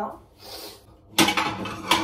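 Dishes and cutlery clattering as a plate and utensils are handled, a run of sharp clinks and knocks starting just past halfway.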